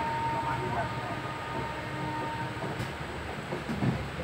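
Steady low rumble of a slowly moving Indian Railways train, heard from inside the coach, with a short knock near the end.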